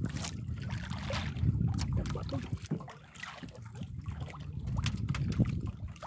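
Wind buffeting the microphone and water lapping against the side of a small outrigger boat, a steady low rumble with scattered faint knocks.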